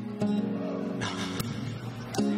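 Karaoke backing track playing a picked acoustic guitar intro, with new chords struck about a second apart.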